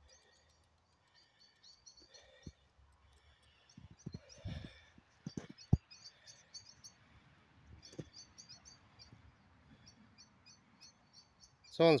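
Small birds chirping in short, repeated high phrases over quiet field ambience, with a few dull thumps about four to six seconds in.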